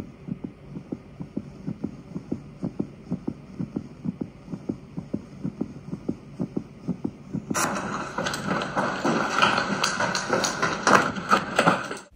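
Running footsteps on a hard cellar floor, quick and regular thuds, picked up by a handheld camera as its wearer flees down a corridor. About seven and a half seconds in, a louder rushing, rustling noise joins the steps.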